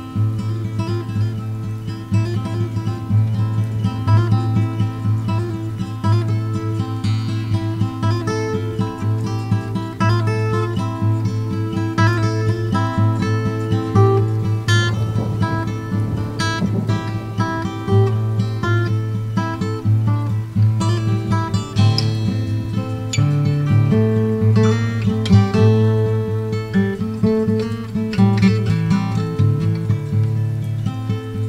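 Acoustic guitar instrumental: plucked notes ringing over a steady low bass note.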